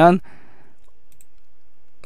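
A few faint computer mouse clicks over low room tone, just after a spoken word trails off at the start.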